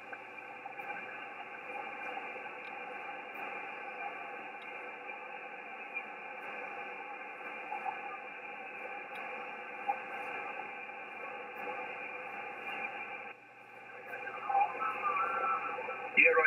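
Shortwave receiver hiss and band noise from an Icom IC-7610 on 20-metre single sideband, heard in a gap between transmissions. Near the end the hiss dips briefly and a faint voice begins to come through.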